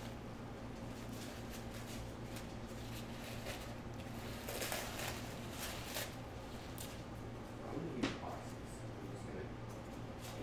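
Faint handling noises, rustles and light clicks, over a steady low electrical hum, with one slightly louder brief sound about eight seconds in.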